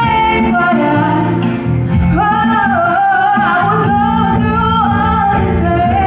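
A woman singing into a microphone with a live band of electric guitar, drums and keyboard, holding long notes over the accompaniment.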